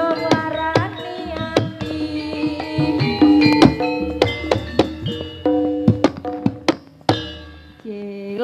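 Live Javanese campursari ensemble playing an instrumental passage between sung lines: sustained ringing pitched tones over busy hand-drum (kendang) strokes, ending on a last stroke about a second before the end that fades out.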